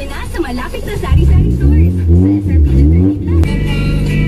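Honda Civic's engine and exhaust revving, its pitch rising and falling several times in quick succession from about a second in and stopping shortly before the end, over background music.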